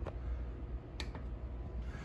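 A steady low electrical or fan hum, with two faint clicks about a second apart.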